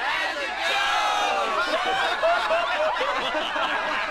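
A group of voices laughing together, many chuckles and snickers overlapping one another.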